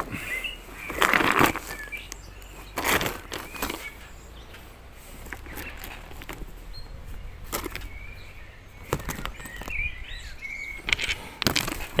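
Handling noise from a rock being turned in the hand right at the microphone: a handful of short knocks and rubs, the loudest about a second in. Faint bird chirps sound in the background.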